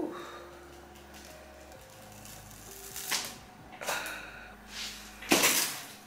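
Handling noise: a few short rustles and knocks, the loudest near the end.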